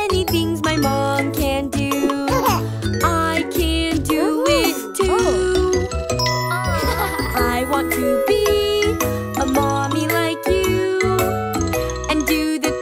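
Children's nursery-rhyme song: a voice singing the melody over a light, bouncy accompaniment with chiming, bell-like tones.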